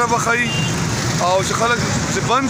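Street traffic running steadily, with an auto-rickshaw engine close by, under a man talking.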